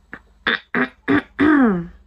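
A woman's voice making four short wordless sounds in quick succession, the last one drawn out with its pitch rising and then falling.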